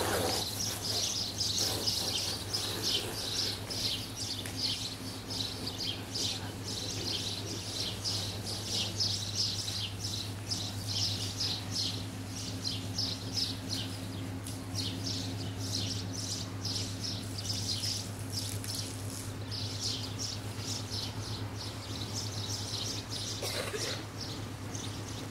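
Rapid, rhythmic high-pitched chirping, a few pulses a second, from birds or insects in the trees, over a steady low hum.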